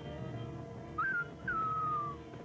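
A whistled call of two notes over soundtrack music: a short note about a second in that rises and dips, then a longer note that slides slowly downward.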